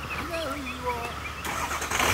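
A man's voice, faint and far off, shouting briefly, over a low steady rumble, with a few small bird chirps.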